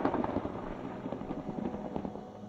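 Rolling thunder rumbling and fading away over a low, steady ambient music drone.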